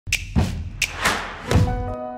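Intro sound effects: a quick run of sharp hits and two deep thumps with swooshing swells, about five hits in a second and a half, then sustained music notes that ring on near the end.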